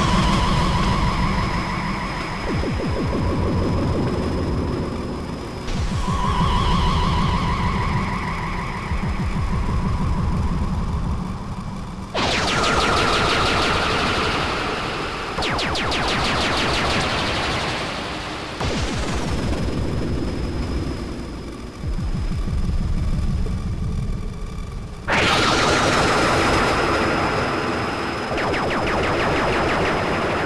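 Electronic music from a live modular synthesizer rig (Eurorack, VCV Rack and Moog semi-modular synths): a fast, rattling pulse in the bass under held synth tones. The pattern changes abruptly about every six seconds, alternating between a thinner section and a brighter, noisier one.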